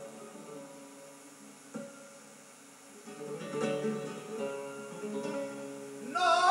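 Flamenco guitar playing alone between sung phrases of a siguiriya. It plucks low notes, strikes one sharp stroke about two seconds in, and plays busier in the second half.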